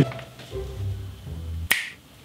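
A single sharp finger snap near the end, over quiet background music.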